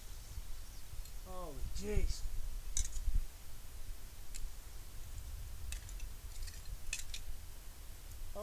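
Handling noise from a handheld camera, with a low rumble on the microphone and scattered light clicks and knocks. A short voice sound falling in pitch comes about a second and a half in.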